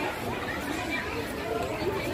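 Indistinct chatter of people talking nearby, no words clearly made out.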